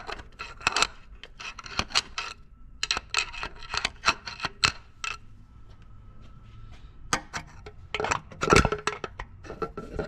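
Metal hand tools clinking, tapping and scraping against a Mercedes 2.0 L engine's aluminium block and open crankcase, in quick clusters of sharp knocks. There is a lull around the middle, and the loudest knocks come near the end.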